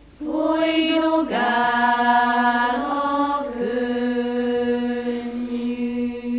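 Children's choir singing a slow song in one melodic line, unaccompanied. A new phrase comes in just after a brief break, with long held notes that slide from one pitch to the next.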